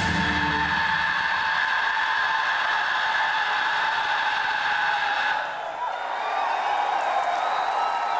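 A heavy metal band ending a song live: the drums and bass stop about a second in, leaving a sustained guitar tone ringing until about five seconds in, when it cuts off. The crowd cheers, yells and whistles throughout.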